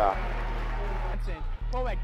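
Steady low electrical-sounding hum under a faint hiss of background noise, with a man's voice starting up again near the end.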